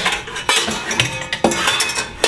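Stainless steel frying pan and other cookware clanking as the pan is pulled out of a cabinet and set onto a gas stove's cast grate, with several sharp metal knocks.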